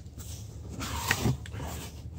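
Cardboard box being opened by hand after its seal has been cut: the flaps scrape and rustle, with a short tick about a second in.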